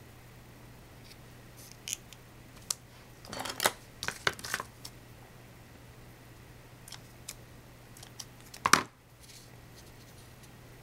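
Hands handling a fabric flower and small craft tools: scattered short clicks and rustles, a quick cluster of them a little past three seconds in, and one sharper, louder click near the end, over a steady low hum.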